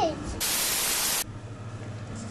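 A burst of static-like white noise lasting just under a second, starting and stopping abruptly. It is a video-editing transition effect at a scene cut, and a faint low steady hum follows.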